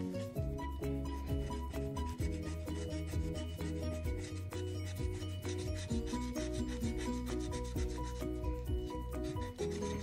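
Rapid, continuous scratching of the coating off a scratch-off lottery ticket, short rasping strokes one after another, with soft background music underneath.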